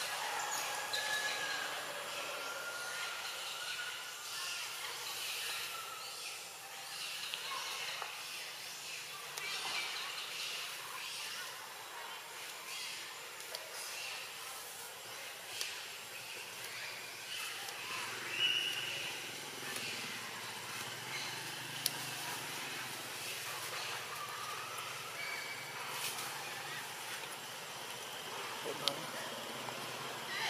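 Forest ambience: a steady high hiss with scattered short high-pitched calls and a few sharp clicks.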